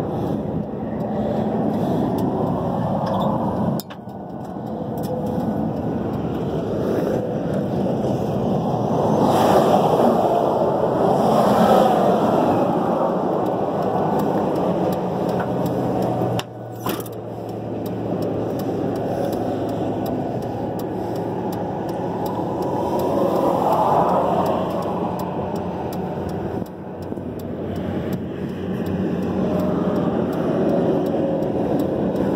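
Loud, continuous motor-vehicle noise that swells and fades, rising about a third of the way in and again near the end.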